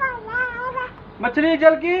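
A toddler's high-pitched, sing-song vocalising: two drawn-out wordless phrases, the second lower in pitch.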